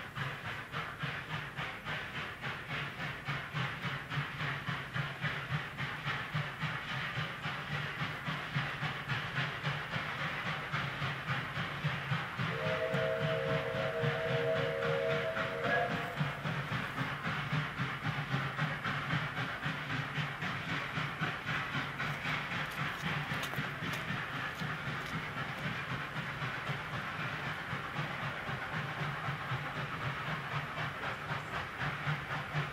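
South African NGG16 Beyer-Garratt articulated steam locomotive struggling up a steep 1 in 30 grade on wet rails, its exhaust beating rapidly and steadily. The sound grows louder toward the middle and then eases away. Partway through, a chime steam whistle sounds once for about three seconds.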